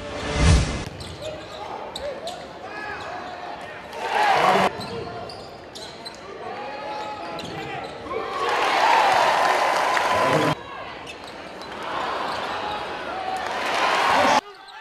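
Basketball game sound in an arena: crowd noise with sneakers squeaking on the hardwood court and the ball bouncing. The crowd swells into cheers three times, around 4 seconds, from 8 to 10 seconds and near the end, and each swell cuts off suddenly at an edit. A short whoosh comes just after the start, on the cut from the intro graphic.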